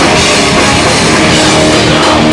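Hardcore band playing live and loud: distorted electric guitars over pounding drums and cymbals, a dense, unbroken wall of sound.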